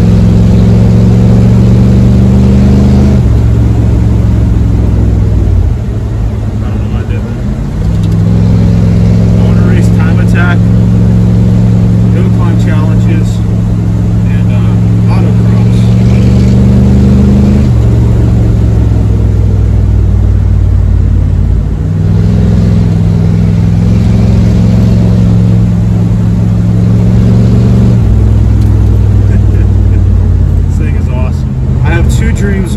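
A 1982 Ford F-150's 302 V8 pulling the truck along, heard from inside the cab. The engine note climbs slowly and drops back sharply a few times, with a dip and a rising sweep early on. Some light rattles come through over it.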